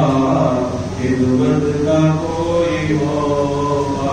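A single voice chanting a melodic devotional recitation, holding long notes that rise and fall in pitch.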